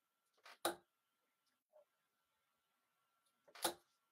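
Steel-tip darts striking a sisal bristle dartboard, a Winmau Blade 5: two short thuds close together about half a second in, and a louder one near the end.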